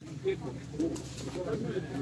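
Indistinct low voices in a store, with no clear words.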